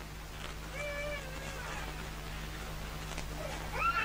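An animal's drawn-out pitched call lasting almost a second, about a second in, and a second, rising call starting near the end, over a steady low hum.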